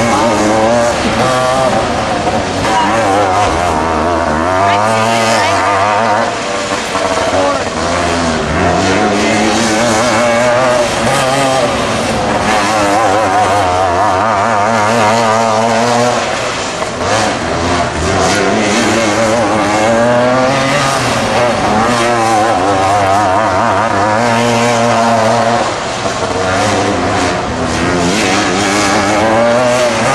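Outlaw dirt kart engine at racing speed, its pitch climbing and then dropping again every few seconds as the kart laps the dirt track.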